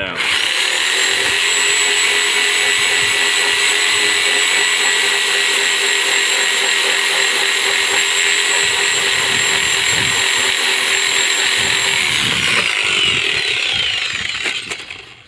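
Reciprocating saw (Sawzall) running steadily as its blade trims the uneven top of a wooden deck post flat. Its motor winds down with a falling whine near the end.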